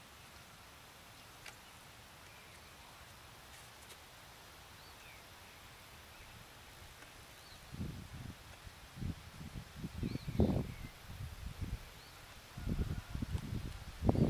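Faint, scattered bird chirps over a quiet open-air background with a single small click early on; from about eight seconds in, irregular low rumbling thumps come and go and become the loudest sound.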